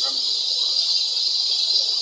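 Summer cicada chorus: a steady, high-pitched drone that holds an even level without a break.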